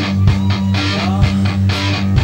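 Live rock band playing: electric guitars and bass guitar over a steady drum beat.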